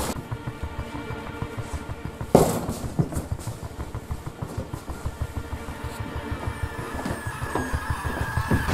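Tense background film score: held tones over a pulsing low beat, with a sudden hit about two and a half seconds in.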